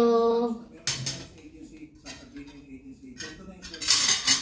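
Metal spoons and forks clinking and scraping against plates as rice is served: a few light clinks about a second in, then a louder clatter near the end.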